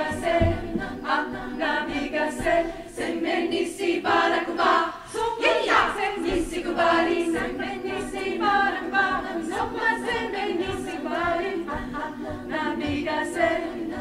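Women's choir singing a cappella in several parts, with a brief drop in loudness about five seconds in.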